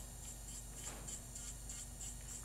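Electric nail file (e-file) with a fine diamond detail bit running at high speed, about 13,000–15,000 RPM, a faint steady hum as it cleans along the nail fold.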